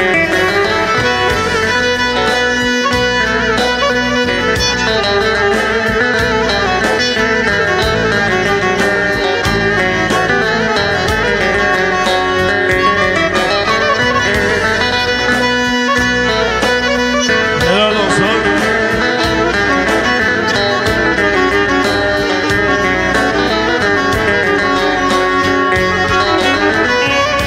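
Karadeniz kemençe, the bowed Black Sea fiddle, playing a lively instrumental folk tune with accompaniment underneath, loud and without a break.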